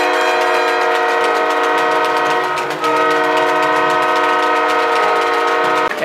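Arena goal horn sounding to signal a goal: a loud, steady, multi-note tone in two long blasts with a brief break near the middle.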